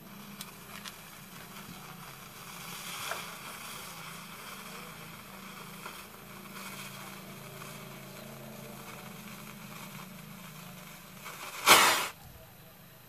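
A lighter clicks, then a fuse hisses steadily for several seconds as it burns down. Just before the end, the homemade powder mixture flares up in a short, loud burst that throws sparks.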